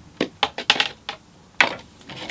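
Wooden longbows knocking against one another in an upright rack as they are shifted by hand: a quick run of about six light clacks, the sharpest about one and a half seconds in.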